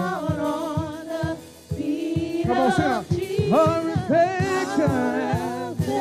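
Live gospel worship song: a woman and a man singing into handheld microphones, voices held with vibrato, over a steady low beat, with a short break in the singing about a second and a half in.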